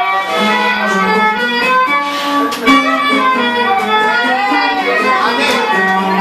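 Cretan lyra playing a lively melody over a steady low accompaniment.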